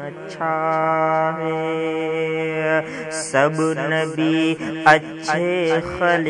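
A man chanting a naat, an Urdu devotional song in praise of the Prophet, unaccompanied. He holds one long steady note for over two seconds, then sings shorter, wavering, ornamented phrases.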